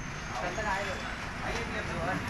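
Indistinct voices over steady low roadside traffic noise, with a faint high-pitched whine that dips and then slowly rises.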